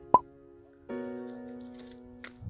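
Background music with held electronic chords. A single short pop sound effect sounds right at the start, and a new sustained chord comes in about a second later.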